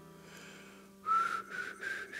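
The last guitar chord dies away. About halfway in, a breathy whistle starts: a few short notes, each a little higher than the last.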